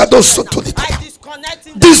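A man's voice praying loudly and rapidly into a microphone, in a chanting, rhythmic delivery, with a fresh loud shout near the end.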